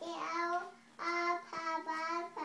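A toddler singing in a high little voice: three short sung phrases of held notes, the last one about a second long.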